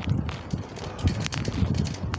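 Footsteps and handling noise from a phone carried while walking: irregular low thumps and rumble, with a few sharp clicks.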